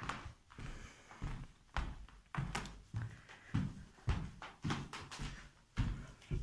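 Footsteps walking at a steady pace, about two steps a second, each a soft thud.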